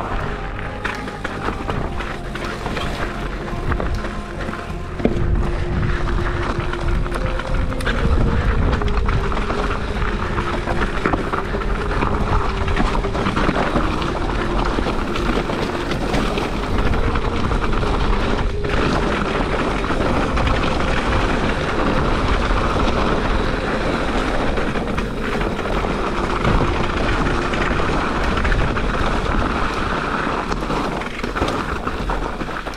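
Instrumental background music with sustained notes, getting louder about five seconds in.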